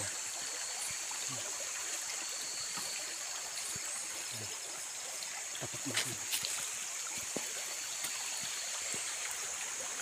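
Steady rush of a shallow forest stream, with a steady high-pitched hiss above it and a few footsteps on gravel and dead leaves.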